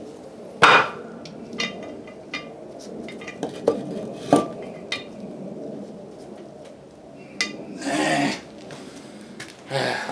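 Metal clanks and knocks from a heavy cast-iron brake rotor and hub assembly being handled, turned over and set down on wooden blocks: a sharp loud clank about a second in, another near the middle, and several lighter clinks between.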